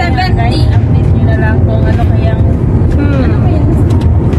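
Steady low rumble of road noise inside a car's cabin, with quiet voices talking over it.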